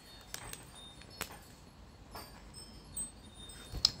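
Soft scattered clicks and taps of two silicone car cup coasters being unpacked and handled, with a sharper knock near the end. Faint, high ringing tones sound on and off in the background.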